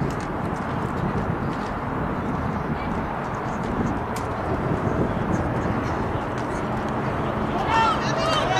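Ballpark ambience: a steady low rushing noise with indistinct spectator voices, and voices calling out loudly near the end.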